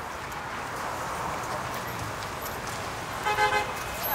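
Steady outdoor background hubbub, then about three seconds in a short horn toot lasting about half a second, the loudest sound here.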